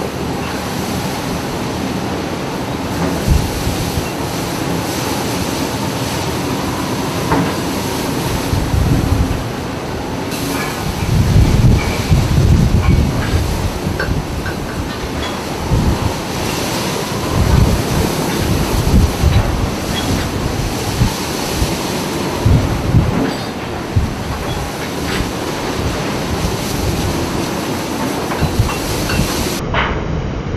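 Storm at sea: a loud, steady roar of wind and breaking waves, with heavy low buffets of wind on the microphone from about ten seconds in.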